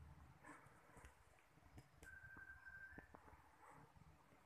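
Near silence: room tone with a few faint clicks and a faint, steady high tone lasting about a second midway.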